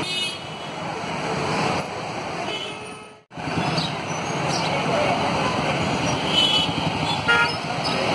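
Busy street traffic and crowd noise from passing cars, vans and motorbikes, with vehicle horns tooting in short blasts near the start and twice near the end. The sound drops out briefly about three seconds in.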